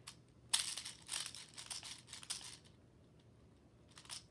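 A speed loader being worked by hand: a quick series of scraping, clicking handling noises in the first half, then quiet.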